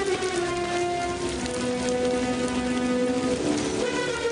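Heavy rain falling steadily, under an orchestral film score of long held notes that shift pitch about a second in and again near the end.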